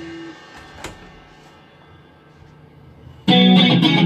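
Live rock band with distorted electric guitars: a held chord rings out and fades into a brief lull, then the guitars and bass come back in loudly, strumming, a little over three seconds in.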